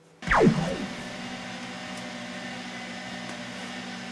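A short falling whoosh about a quarter-second in, then a steady machine hum with several held tones: the SainSmart Genmitsu LE5040 laser engraver running while it burns a test pattern.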